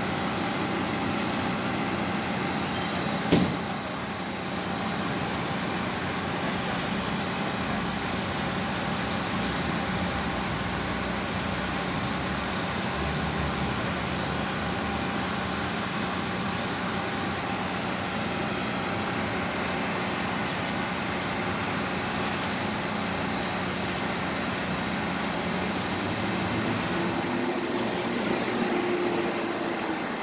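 Concrete mixer truck's engine running at a steady idle, a continuous drone. A single sharp knock about three seconds in.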